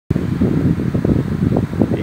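Loud, irregular low rumble of moving air buffeting the microphone, fluttering throughout with no clear tone.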